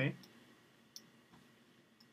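A single sharp computer mouse click about a second in, with a fainter click just after, over low room tone.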